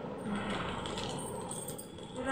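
Light clicks and rustling from handling a new pressure cooker's packaging and parts, with a few faint clicks.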